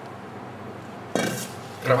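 A single sharp clink of kitchenware about a second in, dying away quickly with a brief ring.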